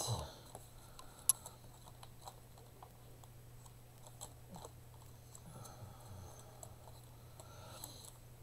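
Faint crinkling and small clicks as a dried leaf in a clear plastic sleeve is handled on its string, with one sharper tick about a second in, over a low steady hum.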